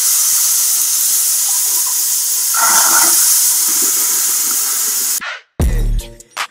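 Steady hiss of water running from a bathroom vanity faucet into the sink, with a brief louder splash about three seconds in; it cuts off suddenly about five seconds in. A deep bass hit of music follows near the end.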